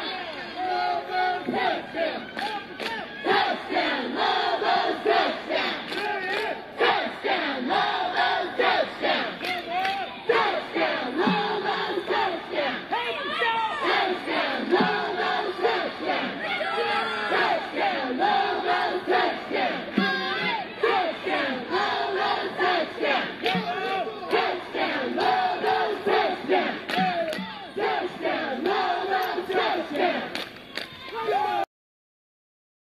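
Cheerleading squad shouting a crowd-leading cheer in unison, many voices yelling together, punctuated by sharp hits.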